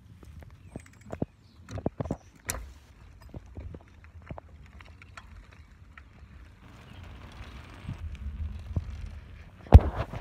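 Scattered clicks and rattles from a bicycle's frame and handlebars as it rolls over pavement, picked up by a phone held at the handlebars. A low rumble builds in the second half, and one loud thump comes near the end as the phone is handled.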